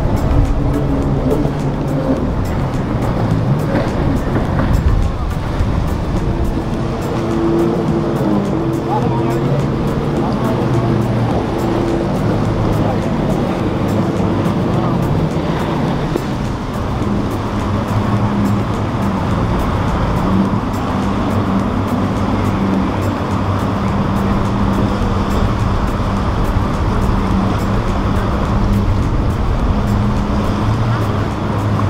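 Outboard motors running on boats passing through the inlet, a steady engine drone, mixed with background music and voices.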